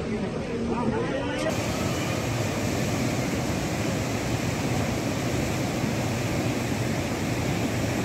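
Voices of an onlooking crowd over a rushing noise, then a sudden cut to a steady rushing roar of the swollen, fast-flowing river in flood, with no voices.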